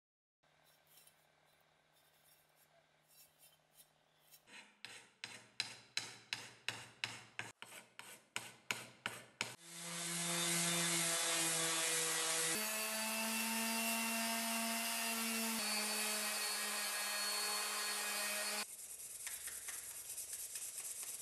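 Rhythmic hand scraping strokes, about three a second, then a Metabo random orbital sander starting up about halfway and running on wood, its hum stepping in pitch twice. Near the end it gives way to quieter rubbing of hand sanding on the wooden handle.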